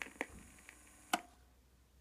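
A few small clicks over the faint tail of a guitar note, the loudest about a second in, after which the steady background hiss cuts off.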